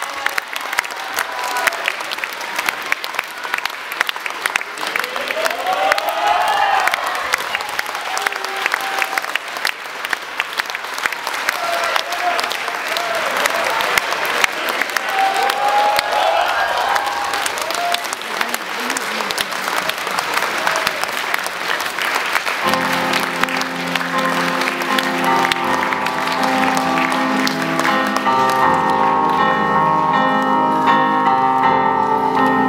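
Theatre audience applauding with dense, steady clapping, a few voices calling out over it. About three-quarters of the way through, piano-led music starts up under the applause.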